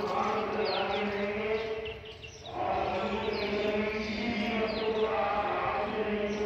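Devotional chanting on long held notes, pausing briefly about two seconds in and then resuming. Birds chirp over it.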